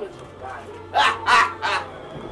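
Three short, harsh cries in quick succession, about a third of a second apart, starting about halfway through, over a low steady hum.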